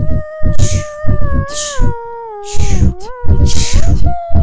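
A cappella vocal music: a beatboxed drum beat with a snare-like hit about once a second, under a single held sung note that steps down twice and slides back up near the end.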